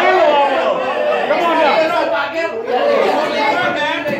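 Several people talking at once: overlapping chatter among a gathered crowd, with no single clear voice.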